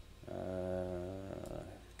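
A man's drawn-out hesitation "uh", held at one steady pitch for about a second.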